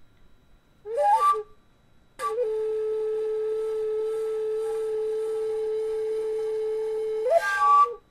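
A flute playing: a short run of quick notes about a second in, then one long held low note for about five seconds, closing with a quick rising flourish near the end.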